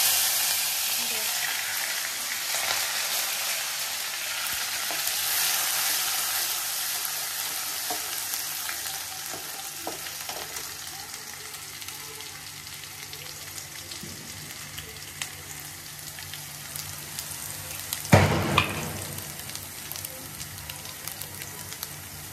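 Crushed garlic, ginger, onion and green chilli tipped into hot oil in a steel kadai: a sudden loud sizzle that slowly dies down as the mix fries and is stirred with a ladle. A couple of sharp knocks come near the end.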